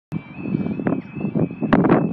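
Road traffic noise: an uneven low rumble with a few short clicks, and a faint steady high-pitched tone in the background.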